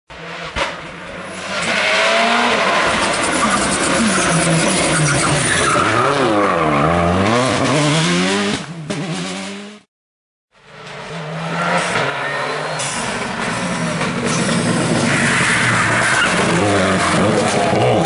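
Rally cars driven hard on a tarmac stage: engine revs climbing and dropping again and again through the gears, with tyre squeal, in two passes split by a half-second silence about halfway. The second pass is a Subaru Impreza, its turbocharged flat-four at full throttle.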